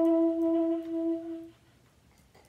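Alto saxophone holding one long final note, which wavers and then stops about a second and a half in.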